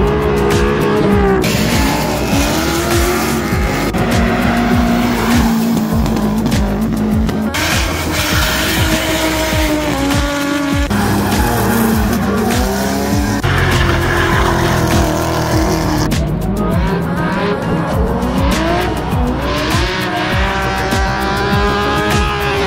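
Drift cars' engines revving hard, rising and falling in pitch over and over, with tyres squealing as they slide; the sound changes abruptly several times. Music plays underneath.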